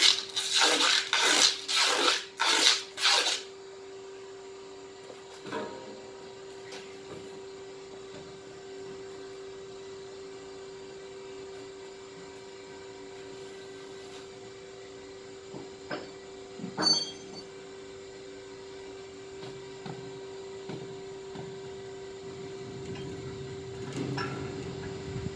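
Steady electric hum from workshop machinery, with loud rough rubbing and scraping for the first few seconds and a few short knocks later, the loudest about two-thirds of the way through.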